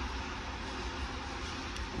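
Steady background noise, an even hiss with a low hum underneath and no distinct events.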